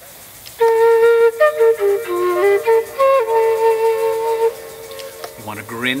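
End-blown bamboo flute with a shakuhachi scale and a kena-style notched mouthpiece playing a short phrase: a held note, a few notes stepping down and back up, then a long held note.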